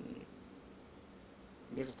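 A man reciting verse: a brief low throaty voice sound at the start, a pause of faint steady room hum, then a spoken word near the end.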